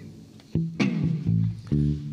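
A live rock band plays an instrumental gap between sung lines: electric guitar chords over bass guitar. The band drops low for about half a second, then comes back in with a sharp attack and repeated low notes.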